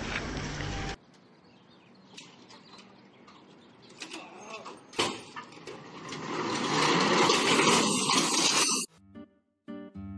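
A sharp knock about five seconds in, then a loud, dense clatter for about two seconds that cuts off suddenly, as a heavy rolling tool chest runs down a truck's metal loading ramp. Plucked-guitar music starts near the end.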